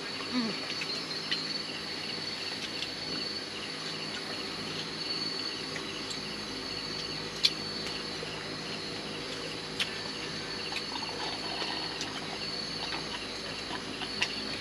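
Night-time insect chorus: a steady, high-pitched chirring that does not let up, with a few sharp clicks, the loudest about seven and a half seconds in.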